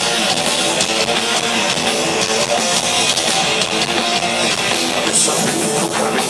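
Rock band playing live through a stadium PA: loud electric guitars over drums in a dense, steady wall of sound, with no vocals in this stretch.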